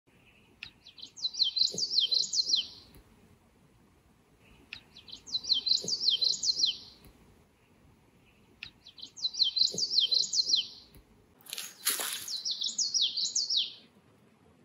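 Male common yellowthroat singing its rolling song four times, each about two seconds long and about four seconds apart: a quick run of repeated high, downslurred phrases. A brief noisy rustle comes near the end.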